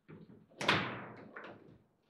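Table football play: the ball knocking against the rod figures and table, with one hard knock a little over half a second in and a few lighter knocks around it.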